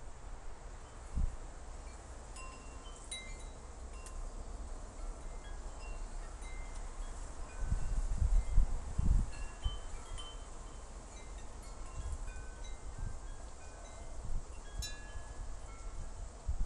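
Wind chimes ringing irregularly, single notes at several different pitches. Gusts of wind rumble on the microphone around the middle.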